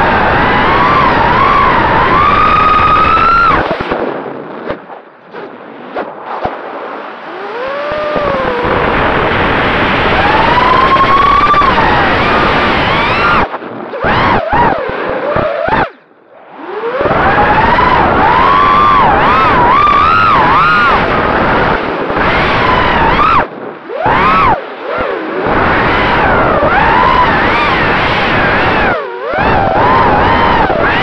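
FPV racing quadcopter's brushless motors and propellers whining as heard from the onboard camera, the pitch sliding up and down with the throttle. The sound drops away several times when the throttle is chopped during dives and flips, most deeply around a third and a half of the way through.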